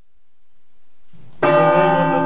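A bell struck once, loud and sudden, about one and a half seconds in, ringing on with many overtones.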